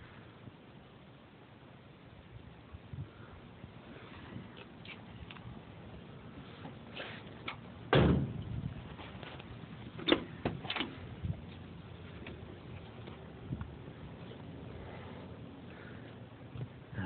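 A pickup truck cab door shut with a single solid thump about halfway through, then two sharp latch clicks about two seconds later as a door is worked again, with a few faint knocks between.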